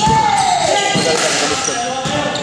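Indoor basketball game: a basketball bouncing on a hardwood gym floor, with sneaker squeaks and players' voices ringing in the hall. A loud high tone slides down in pitch over the first second.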